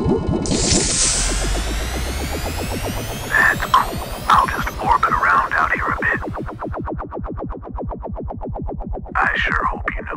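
Electronic synthesizer score with a fast, even pulse. A bright whooshing sweep comes in about half a second in, and warbling electronic chirps sound in the middle and again near the end.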